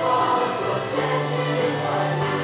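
A choir singing a Christian worship song, with held, layered notes that change pitch about a second in.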